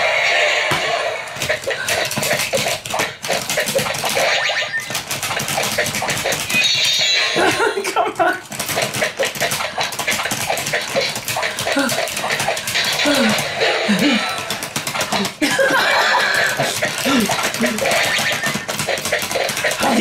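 Rapid, continuous plastic clicking and clacking of Akedo battle figures and their hand controllers being worked in a fight, with a man's voice breaking in now and then.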